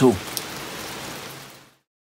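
The end of a man's spoken word, then a steady outdoor background hiss that fades out to silence about three-quarters of the way through.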